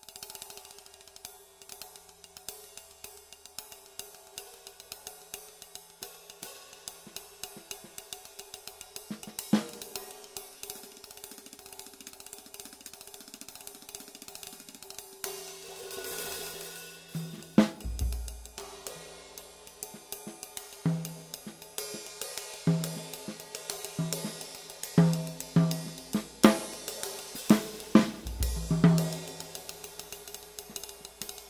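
Jazz time played with sticks on a Paiste 16-inch Sound Creation Dark Flat Ride, a heavy flat ride with an extremely dry ping and little wash. About halfway through, bass drum and snare or tom accents join in, with two deep bass-drum strokes.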